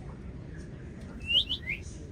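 Quiet room tone with three quick, high-pitched chirping squeaks close together, a little over a second in.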